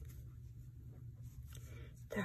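Faint scratching and rustling of yarn being wrapped and drawn through with a crochet hook, over a steady low hum.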